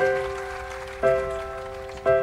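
Instrumental karaoke backing track: piano chords struck about once a second, each ringing and fading before the next.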